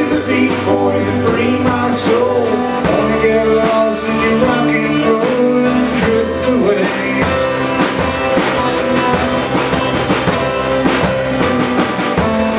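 Live band music: acoustic-electric guitar and drum kit playing a steady beat.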